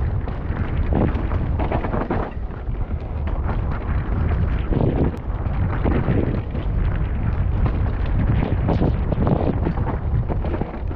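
Mountain bike descending a dirt forest trail at speed: a loud, continuous rumble of wind on the microphone and tyres on dirt, broken by frequent knocks and rattles as the bike hits bumps.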